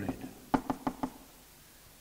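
Four quick sharp taps of a marker against a flip chart board being written on, about half a second to a second in.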